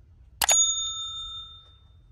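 A mouse-click sound effect followed at once by a single bright bell ding that rings and fades over about a second and a half: the notification-bell sound of a subscribe-button animation.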